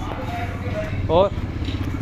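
Motorcycle engine running with a steady, rapid putter.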